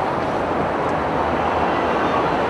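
Steady outdoor background noise: an even rush with no distinct events standing out.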